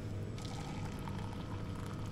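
A steady low mechanical hum with a faint higher whine and light hiss, unchanging throughout.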